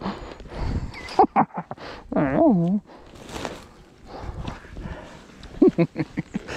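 Rustling and crinkling of a foil bubble-wrap sled and clothing as a dog shifts on a man's lap in snow, with a few soft knocks. About two seconds in comes a short wavering vocal moan.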